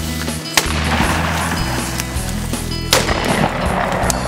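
Two sharp shotgun reports about two and a half seconds apart, the second louder, over background music with a steady bass.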